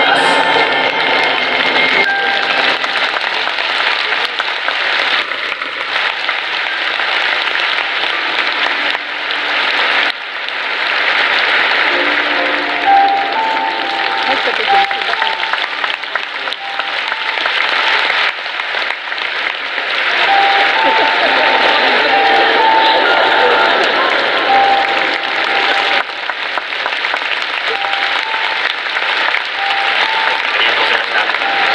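Large stadium crowd applauding steadily, swelling about ten seconds in, with music playing faintly beneath.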